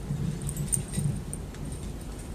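Microphone stand being adjusted by hand: handling rumble on the microphone with a quick cluster of small metallic clicks and rattles from the stand's clamp in the first half.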